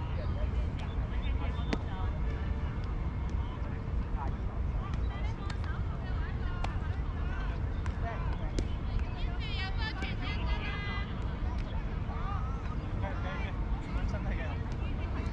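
Distant, indistinct voices calling out across an open playing field, heard in short bursts, over a steady low rumble, with a few sharp clicks.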